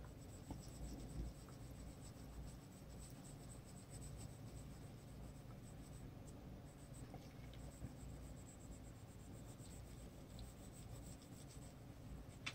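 Faint scratchy rubbing of a wax-based Prismacolor colored pencil shading over paper, with small irregular strokes and light ticks.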